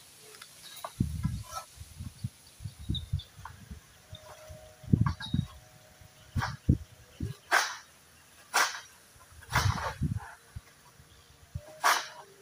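Long-pole sickle (egrek) cutting fronds high in a tall oil palm: a string of irregular dull thuds and several sharp cracks, the loudest cracks coming in the second half.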